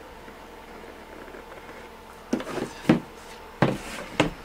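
Three sharp clacks in the second half from the plastic half-pipe compass and its pencil being handled against the hard tray, over a low steady hum.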